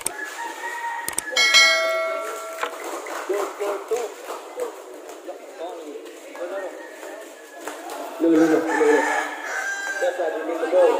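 A rooster crows once, a call of about a second, over scattered voices of players and onlookers.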